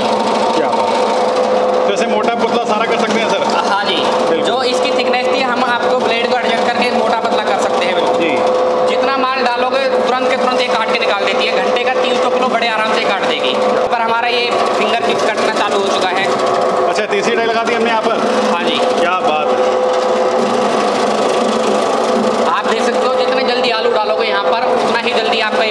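Electric potato slicing machine running with a steady motor hum, with people talking over it.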